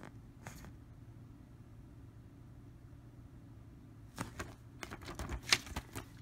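Quiet handling noise: a paper leaflet rustling and light taps and clicks as things are moved about on a table, busiest in the last two seconds with one sharper tap near the end, over a low steady hum.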